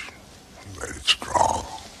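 An old man's gravelly, throaty voice making a short rough utterance about a second in, with a brief hiss in the middle.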